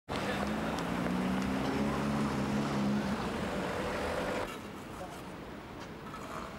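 Road traffic noise with a vehicle engine humming steadily for about the first three seconds, and indistinct voices; the sound drops to a quieter background about four and a half seconds in.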